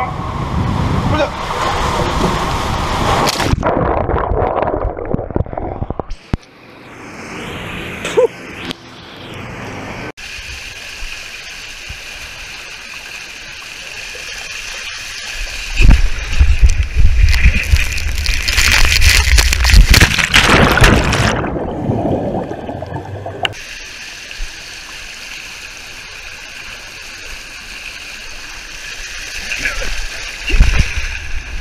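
Water rushing and sloshing along a plastic water slide as a rider slides down it, close to the microphone. It turns louder and splashier for several seconds past the middle, then settles into a steadier rush.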